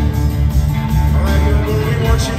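Live rock band playing: electric guitar, bass guitar, drums and acoustic guitar, with strong, full bass.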